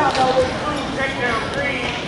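Indistinct voices of spectators and coaches calling out in a gym, with a thump near the start and another about half a second in.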